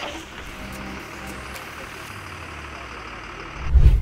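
Steady engine and road noise of a moving vehicle, then a short, loud, deep boom near the end.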